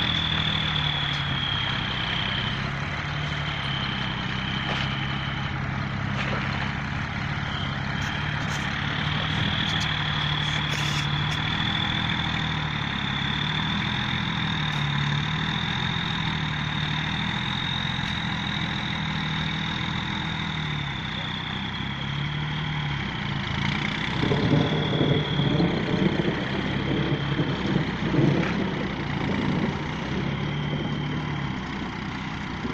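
Truck engine labouring as it hauls a full load of sugarcane across soft field ground, its pitch rising and falling throughout, with a steady high whine above it. The engine gets louder and rougher for several seconds near the end.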